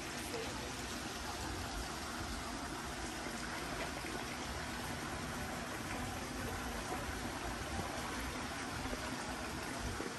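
Running water trickling steadily, as from a garden stream feeding a pond.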